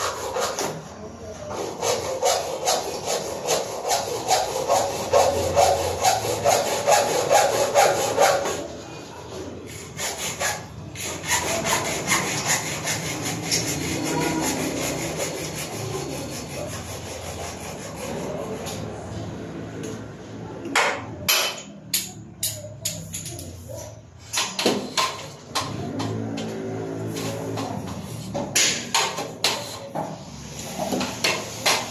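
Electrical cable rubbing and scraping as it is pulled and worked through a ceiling frame. It starts as a run of regular strokes, about three a second, then turns to irregular rubbing with scattered clicks and knocks.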